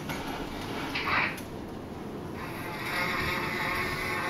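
Small electric motor of a Lego robotics model switched on about two seconds in, running with a steady whir. A short, louder sound comes about a second in, before the motor starts.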